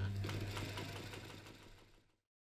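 Sewing machine running, a steady hum with fast needle ticking, fading out to silence near the end.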